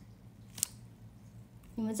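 A single short, sharp click, about half a second in, from a smartphone being handled, over a faint steady hum; a woman's voice begins near the end.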